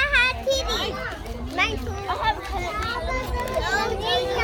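Young children chattering and calling out in high-pitched, overlapping voices, with a low rumble underneath.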